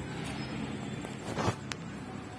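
Steady outdoor background noise, with a short rising rush of noise that peaks and stops about a second and a half in, then a single sharp click.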